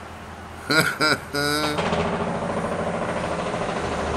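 Homemade belt grinder driven by an old washing-machine electric motor, switched on about a second and a half in and then running steadily, turning the wooden drive wheel and belt.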